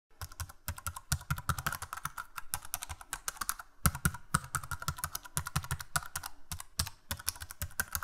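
Rapid keystrokes on a computer keyboard, many a second, with a few brief pauses. The typing sound accompanies on-screen text appearing letter by letter.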